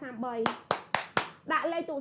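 Four quick, sharp hand claps, about four a second, between stretches of a woman's talk.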